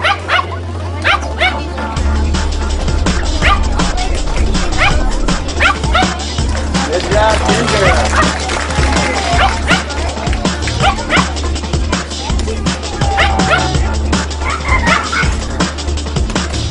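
Music with a heavy bass beat, over which a small fluffy dog barks and yips again and again.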